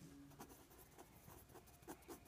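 Faint scratching of a pen writing on a sketchbook's paper page, in short irregular strokes.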